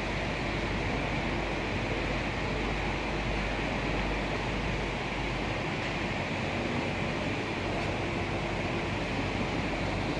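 Steady, even rushing noise of a large crowded hall, with no distinct sound standing out.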